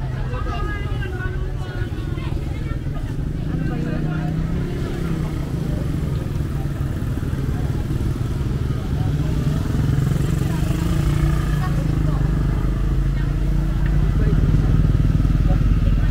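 Busy street sounds: people's voices mixed with motorcycle engines running close by, growing louder near the end.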